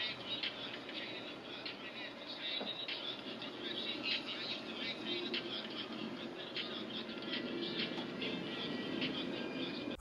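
Music leaking out of an Edifier NeoBuds Pro true wireless earbud worn in the ear and played at full volume: a rap track heard faint and thin, with almost no bass.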